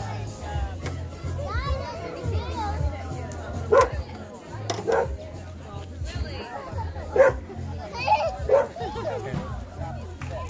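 Voices and children's chatter, with a handful of short loud cries standing out over a steady low hum.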